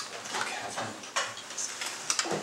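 A book and papers being handled at a lectern close to its microphone: a quick series of small clicks, taps and rustles.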